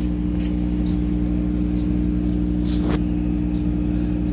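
A 50 W CO2 laser engraver running a job: its air-assist compressor, cooling-water pump and exhaust fan make a steady electrical hum, with a couple of brief ticks as the laser head moves.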